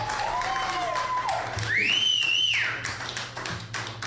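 Electric guitar notes bending and ringing out as the song ends, with one high note rising, holding and falling about two seconds in. Scattered taps follow near the end, over a steady low hum.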